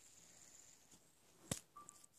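Near silence: room tone, broken by a single sharp click about a second and a half in, followed by a short faint beep.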